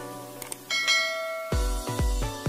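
Upbeat intro music with a bright bell ding sound effect, the notification-bell click of a subscribe animation, under a second in; about halfway through, a heavy electronic dance beat with deep bass kicks starts.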